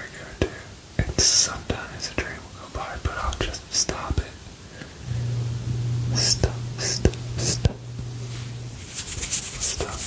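A man whispering close to the microphone, with hissing 's' sounds and short clicks. A steady low hum sounds for about four seconds in the middle.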